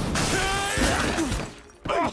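Cartoon sound effects of glass shattering in a loud crash that dies away about a second and a half in. It is followed near the end by a sharp thud of bodies landing in a pile of cardboard boxes.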